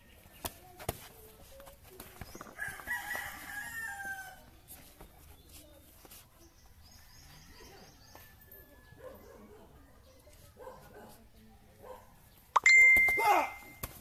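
A rooster crows once, a couple of seconds in, over scattered faint taps and knocks. Near the end comes the loudest sound, a sudden loud burst with a held high ringing tone lasting about a second and a half.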